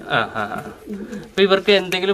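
Pigeon cooing, with a man's voice coming in near the end.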